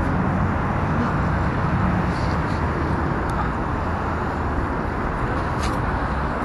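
Steady road-traffic noise from cars passing on a city street.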